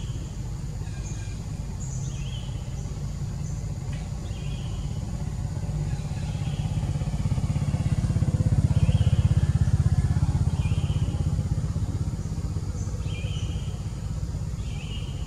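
A low engine rumble, like a passing motor vehicle, swells to its loudest about two-thirds of the way through and then eases off. Short high chirps repeat about once a second over it.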